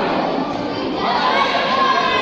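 Spectators, many of them children, shouting and cheering together in a large sports hall, with several voices raised in held calls from about a second in.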